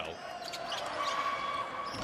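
Basketball game sound during live play: a basketball bouncing on the hardwood court over the steady murmur of an arena crowd, with a brief squeak about a second in.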